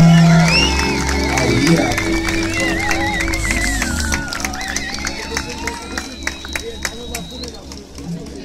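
Live looped vocal beatbox music played through a street PA, its heavy bass loop stopping about halfway through as the song ends. Scattered clapping and crowd noise follow.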